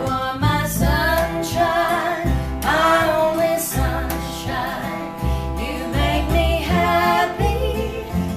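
A woman singing a slow song to an acoustic guitar and a plucked upright double bass, with deep bass notes under the voice.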